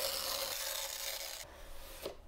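Cardboard lid of a Mac mini box sliding up off its base, a steady papery rubbing hiss that fades out about one and a half seconds in.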